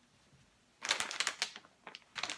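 Plastic snack bags crinkling as they are picked up and handled: a dense flurry of crackles lasting about a second, starting just before the middle.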